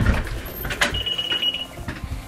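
A single short, high electronic beep about a second in, held for about half a second. It comes after a few sharp knocks and clatter.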